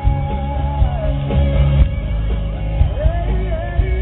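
Live pop-rock band with a male lead singer singing into a microphone over electric guitar, with a heavy low end. The vocal line is held and slides between notes.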